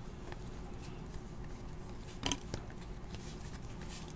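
Trading cards being handled and sorted by hand: faint sliding and ticking, with one sharper tap a little over two seconds in, over a steady low hum.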